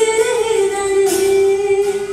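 A girl singing a Hindi song through a microphone, holding one long note after a short rise in pitch, with acoustic guitar accompaniment.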